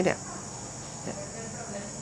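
Steady high-pitched insect chirring in the background, with a brief spoken word at the start.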